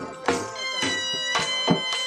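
Saraiki folk music for jhumar dancing: loud drum strokes under a high, sustained melody line whose notes glide and bend.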